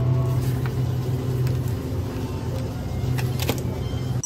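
Steady low hum with a background of noise from a convenience store's refrigerated display case, with a few faint clicks about three and a half seconds in.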